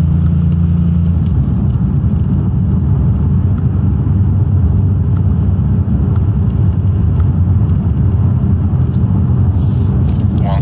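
Audi D4's 4.0 TFSI V8, heard from inside the cabin, droning at low revs under light throttle while the tuned ZF 8HP eight-speed automatic is shifted up manually. The engine note steps down in pitch with each quick upshift, the first about a second in. The engine drops into four-cylinder mode at light load.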